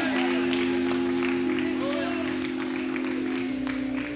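Organ holding sustained chords that shift a few times, with voices in the congregation calling out over it.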